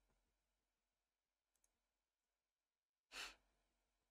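Near silence, broken about three seconds in by one short, breathy sigh from a man close to a studio microphone.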